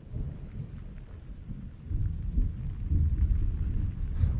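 Wind buffeting the microphone: an uneven low rumble that grows louder about halfway through.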